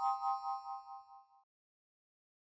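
Electronic chime sound effect: a bright chord of bell-like tones rings out and fades away over about a second, pulsing as it dies.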